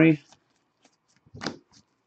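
Glossy foil trading cards being slid off a hand-held stack one at a time: a short swish of a card about one and a half seconds in, with faint ticks of card edges around it.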